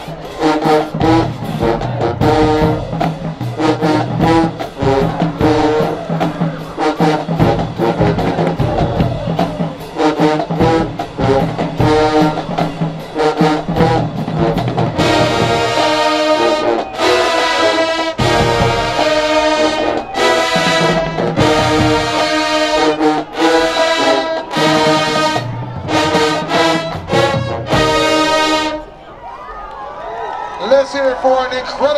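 Marching band brass and drumline playing loud, with sousaphones, trumpets and trombones over steady drum hits. In the second half the music breaks into short, accented full-band blasts with brief gaps between them, and the piece stops about a second before the end.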